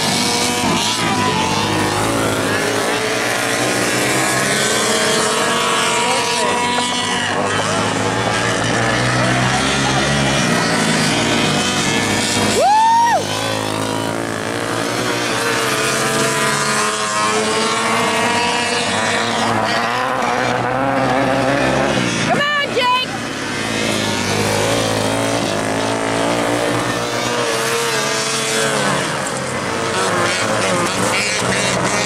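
Several racing karts' small engines running around a dirt oval, their pitch rising and falling as they accelerate, lift and pass. A brief loud high tone that rises and then drops comes a bit before halfway.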